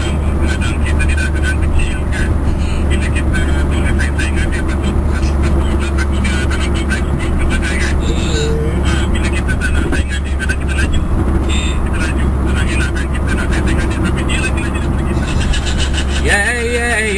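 Steady low drone of a car driving at highway speed, heard from inside the cabin, with indistinct voices over it.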